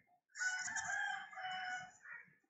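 A long animal call, held about a second and a half, with shorter calls following near the end.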